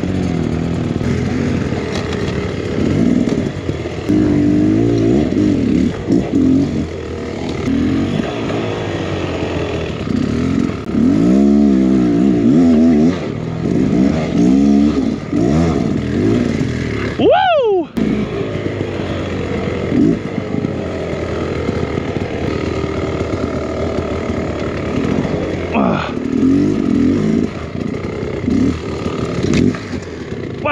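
Beta X Trainer 300 two-stroke dirt bike engine revving up and down in low gear over rocks and roots, the clutch being slipped to keep the power smooth and the tire from spinning. A little past halfway there is one sharp rev up and back down, with a brief drop right after.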